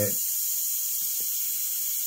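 Iwata CM-SB airbrush blowing air only, a steady hiss, to dry freshly sprayed acrylic paint on the board.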